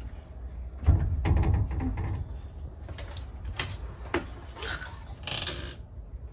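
Metal-framed railway carriage window sash being worked by hand: a heavy knock about a second in, then irregular clicks and rattles of the sash in its frame, and a short scrape near the end.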